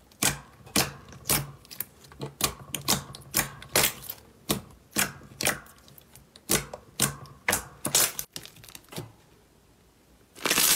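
Hands pressing and squishing a large blob of glossy red slime, making a run of sharp pops and clicks about twice a second. The popping stops about a second and a half before the end.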